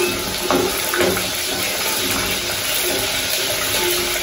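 A steady hiss of cooking on a gas stove, from the brass pot being stirred on the flame.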